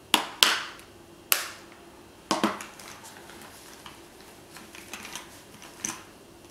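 Makeup containers and tools being handled and set down on a hard surface: a few sharp clicks and knocks in the first half, the loudest near the start, then lighter clicks and taps.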